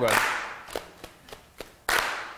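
Hands clapping a rhythm, with a few light claps and then one loud clap near the end.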